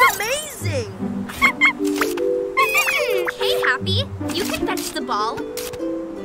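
Cartoon robot puppy's squeaky, warbling electronic chirps, several short bursts, over background music with held notes.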